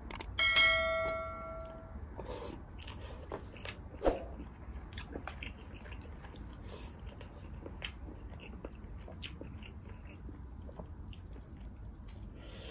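A bright bell-like ding about half a second in, ringing for about a second and a half: the chime of an on-screen subscribe-button animation. After it, close-miked chewing and eating sounds with many small wet clicks as rice and meat are eaten by hand.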